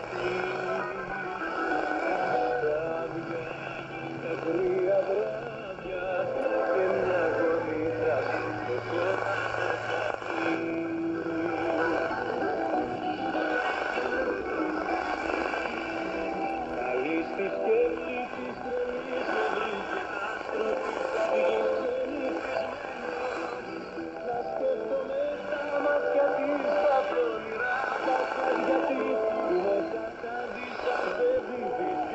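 Hellenic Radio shortwave broadcast on 9420 kHz heard through the speaker of a Digitech AR-1748 receiver: music with a voice.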